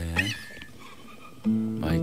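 Nylon-string classical guitar starts the song's opening chord about a second and a half in, the notes ringing on. A short spoken word comes just before it.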